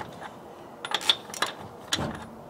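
Socket wrench with a 27 mm socket snugging truck wheel lug nuts: a few sharp metal clicks, bunched about a second in and again near the end.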